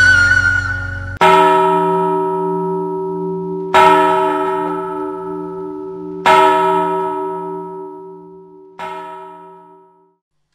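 A single church bell struck four times, about two and a half seconds apart. Each stroke rings on and fades away, and the last is much softer than the others.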